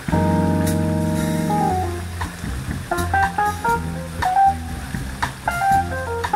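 A jazz quartet playing live, with drums played with sticks and a bass line. The band holds a chord for about the first two seconds, then a lead instrument plays a run of quick single notes over the drums and bass.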